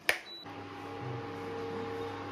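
A plastic wall switch clicks on, then an induction cooktop gives one short high beep. From about half a second in, the cooktop runs with a steady electrical hum and a few faint steady tones.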